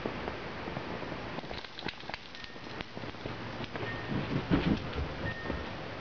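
Outdoor ambience: a steady low hiss with a few faint clicks, and a brief louder rustling noise about four seconds in.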